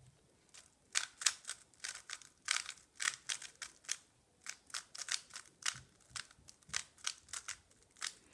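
A GTS3 M magnetic 3x3 speed cube clicking and clacking as its layers are turned quickly by hand to scramble it. The sharp clicks come in irregular runs of turns, with a short pause about halfway.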